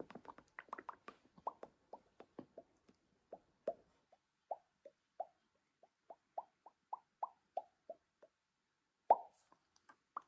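Bubbles of a silicone pop-it fidget toy pressed in one after another with the fingertips: a string of short, soft pops, each dipping slightly in pitch, at about two to three a second, with one louder pop near the end.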